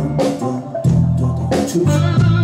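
A rock band playing live without vocals: a Fender electric guitar over bass notes and a drum kit, with cymbal hits near the start, about a second in and near the end.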